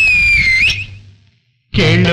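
Film-song soundtrack: a high, whistle-like note, held and falling slightly, fades out. After a short silence, a male voice starts singing near the end.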